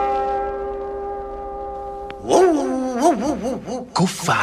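A held brass chord fades out over the first two seconds; then, about two seconds in, a dog howls in several rising-and-falling calls.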